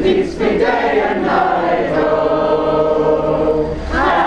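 A group of people singing together in chorus, settling into a long held chord for the second half.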